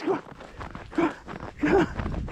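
A dog's paws crunching through fresh snow as it runs, with a few short vocal sounds over it.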